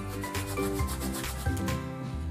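Hands rubbing dry maida flour with ajwain seeds between the palms over a steel plate: a dry, scratchy rubbing in repeated short strokes, with soft background music under it.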